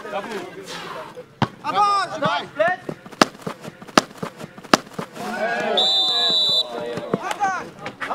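Football kicked several times, sharp thuds of boot on ball about a second and a half in and three more between three and five seconds, then a short blast on the referee's whistle for the foul in a tackle, with players shouting around it.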